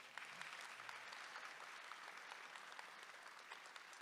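Faint applause from a small audience: a steady patter of clapping hands that dies away near the end.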